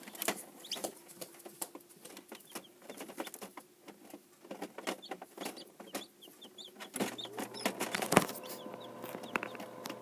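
Newly hatched chicks in an incubator giving short, high peeps among scattered clicks and taps, with a sharp tap a little after eight seconds. A steady low hum with a few tones starts about seven seconds in.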